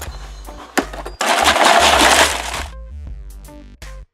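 Background music with a steady bass line, over a cardboard box being opened: a sharp click, then about a second in a loud tearing noise that lasts about a second and a half and stops suddenly.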